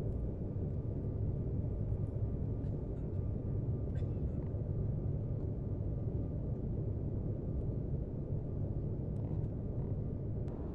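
Steady low rumble of a jet airliner's cabin noise in flight, with a faint steady whine above it. A couple of faint clicks break through, about four seconds in and near the end.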